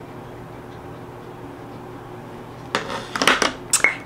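Quiet room tone, then near the end a short cluster of sharp clicks and scratchy handling noises, as small makeup items are handled and set down.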